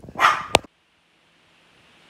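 A short, loud burst of noise, then a sharp click and an abrupt drop to dead silence, with faint hiss slowly fading back in: an edit cut in the recording.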